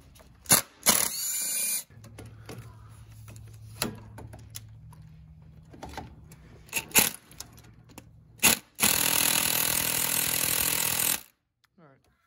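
Ryobi cordless power tool running on 10 mm bolts in a car's engine bay, removing a bracket: a short run about a second in and a longer run of about two seconds near the end, with sharp metal clicks in between.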